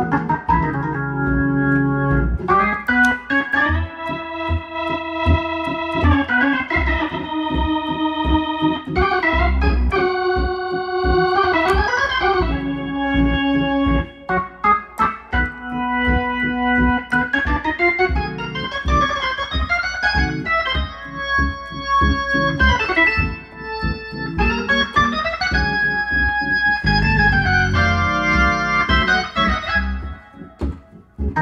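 1955 Hammond B-3 organ played through a Leslie 122 speaker: held chords that change every second or two, with a few upward slides between chords, over a rhythmic bass line.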